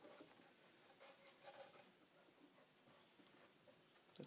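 Near silence: room tone with a few faint scratches of a pencil marking a line on rough wood.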